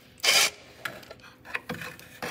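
Oil filter canister being taken down from its housing under an Austin-Healey Sprite: a short, loud scraping burst about a quarter second in, then a few light metallic clicks and knocks.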